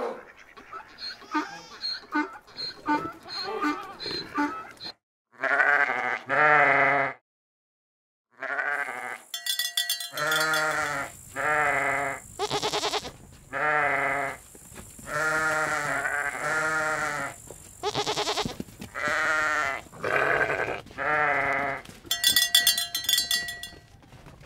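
Sheep bleating over and over, each call a wavering bleat about a second long, several voices following one another with short gaps. Short, lighter calls open the first few seconds.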